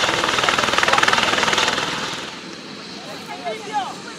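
Eurocopter EC130 light helicopter on the ground with its rotor turning: a loud, rapid, steady blade chop over engine whine. About two seconds in it drops away abruptly to a much quieter background with scattered short voice calls.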